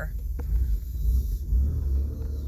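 Low, steady rumble of a vehicle's running engine heard inside the cabin, with one faint click about half a second in.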